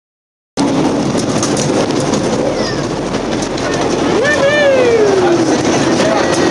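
Miniature ride-on train rolling along its track with a loud, steady rumble and rattle. About four seconds in, a voice calls out one long note that rises and then slides slowly down.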